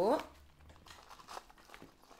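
Faint crinkling and rustling of moss being grabbed by hand and packed into a cut plastic cup around a plant stem, with a few soft crackles.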